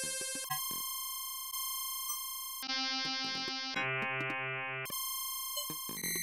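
Electronic tones from a Max 8 software synthesizer patch built around a Karplus-Strong string module. A steady high tone holds throughout, while chords of pure tones change pitch every second or so, each slowly fading. A few clicks come in the first second.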